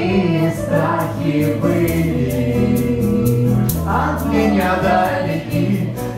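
Live folk band music: acoustic guitars and a djembe hand drum keeping a steady beat, with several voices singing together.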